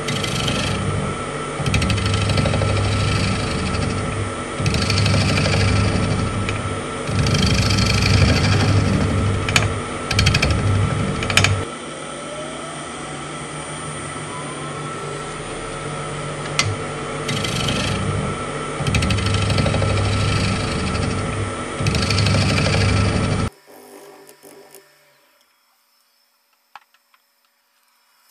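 Wood lathe turning a sugar maple crotch bowl, with a gouge cutting in several passes of a few seconds each, heard as rough low chatter of steel on wood over the lathe's steady motor hum and whine. About 23 seconds in, the lathe is switched off and the sound drops away as it spins down.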